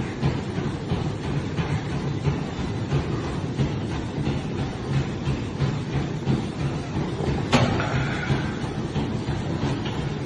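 An exercise machine with moving arm handles being worked hard: a steady, rhythmic mechanical rumble and clatter from its moving parts, with one sharper knock about seven and a half seconds in.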